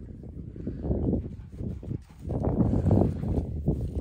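A large dog, an Alaskan malamute, coming down a grassy bank: rustling and soft footfalls through long grass, louder about a second in and again from about two seconds.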